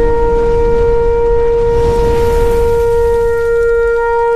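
A shofar blast held as one long steady note over a low rumble.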